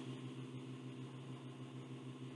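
Steady low electrical hum with a faint hiss: the recording's background noise floor between spoken sentences.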